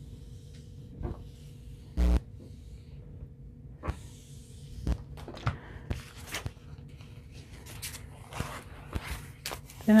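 Household clothes iron worked over a paper towel and set down with one loud thump about two seconds in, followed by paper towel rustling and crinkling with light taps as it is handled.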